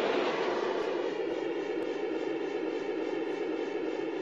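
A steady rushing noise with a faint hum in it, easing off slowly.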